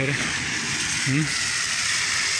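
Water running down a flooded street and along the curb in a steady, rushing hiss, clean water being dumped from a nearby water pump.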